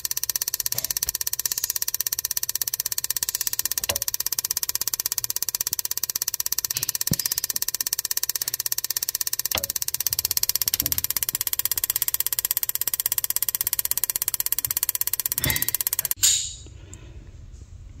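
Two AC Delco R45TS spark plugs snapping as they fire side by side in a spark-plug tester set to 2,000 rpm: a rapid, perfectly even train of sharp clicks. It cuts off suddenly about two seconds before the end.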